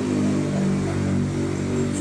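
A steady low mechanical drone, several even pitches held without change, with no break.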